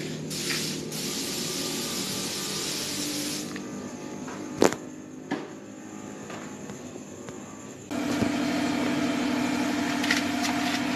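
Steady mechanical hum and hiss, with two sharp clicks in the middle; about eight seconds in a louder, steady low drone with a fixed pitch takes over.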